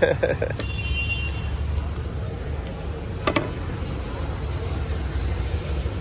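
Steady low rumble of street traffic, with a brief voice at the start and a single sharp click about three seconds in.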